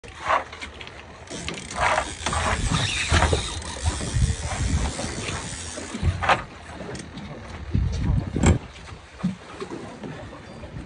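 Short, unintelligible shouts and several sharp knocks on a small boat, over a steady low rumble.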